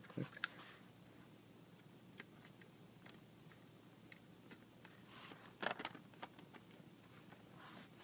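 Quiet room with a few faint clicks and knocks, most of them grouped about five to six seconds in: handling noise as an HO-scale model locomotive is set onto the track.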